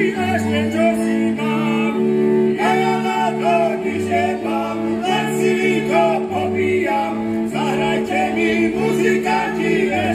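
Slovak Terchová folk band playing live: male singing over fiddles, with a steady held note and a repeating bass line underneath.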